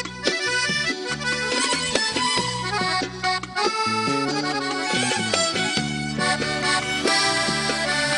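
Instrumental passage of Sudanese popular music from a live band, with an accordion carrying the melody over hand drums and a violin.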